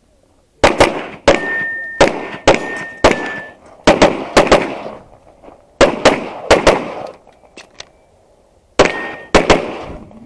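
Rapid semi-automatic pistol fire, the shots mostly in quick pairs, with short breaks about five and eight seconds in. A thin, high metallic ring carries on after some shots, from steel targets being hit.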